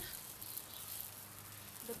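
Faint, steady sizzling of hot dogs on a charcoal kettle grill, with a few small ticks about half a second in.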